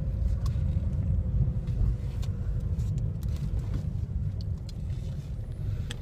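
Steady low rumble of a car heard from inside the cabin: road and engine noise while driving.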